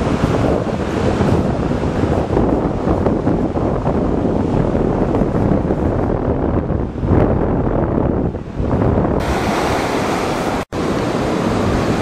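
Wind buffeting the camera microphone over Atlantic surf washing onto a sandy beach. The sound cuts out for an instant near the end.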